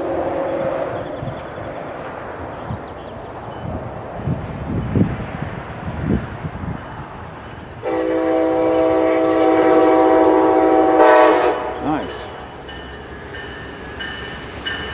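Horn of an approaching Amtrak Pacific Surfliner train: one long blast of several tones sounding together, starting about eight seconds in and lasting about three and a half seconds.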